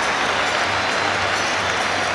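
Football stadium crowd cheering and applauding a home goal, a steady wash of crowd noise.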